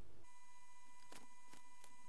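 A faint low hum cuts off abruptly about a quarter second in. It is replaced by a steady high-pitched electronic tone, like a beep held on, with a few faint clicks over it.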